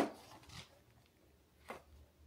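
Plastic index-card box being handled and opened, with index cards inside: a sharp click at the start, then another short click just before the end.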